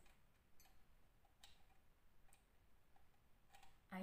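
Near silence with a few faint clicks: an audio cable's plug being handled and pushed into an input jack on a V8 sound card.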